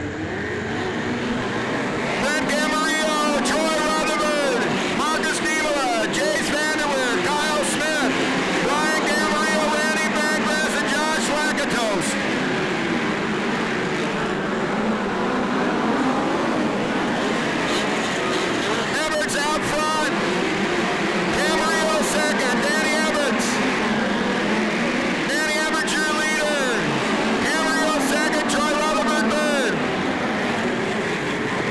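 A pack of dirt-track midget race cars racing at full throttle around a dirt oval. The engines rise and fall in pitch in repeated waves as the cars pass through the turns.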